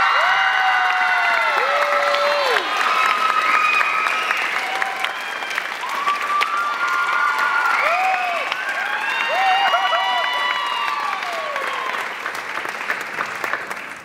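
Audience applauding, with many voices cheering and whooping over the clapping; the applause eases slightly toward the end.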